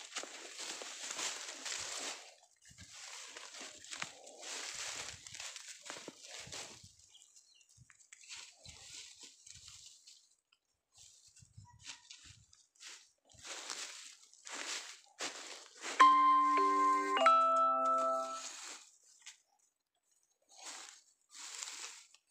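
Footsteps and rustling crunch in dry leaves and cane litter, coming in irregular bursts. About sixteen seconds in, a loud two-note chime cuts in, each note held about a second, the second one slightly higher.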